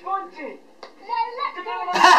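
A high-pitched voice with one sharp hand clap a little under a second in.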